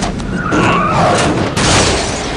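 Car tyres squealing as a car skids, with a wavering screech in the first second and a sudden rush of noise near the end.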